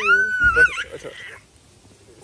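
A baby's high-pitched squealing cry, rising and then held for about a second, with a dull bump about half a second in.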